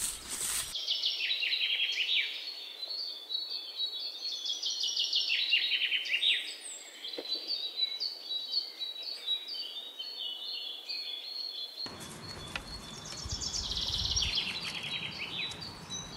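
Small birds singing: repeated runs of quick, high chirps that step down in pitch, one after another. A low rumble joins in for the last few seconds.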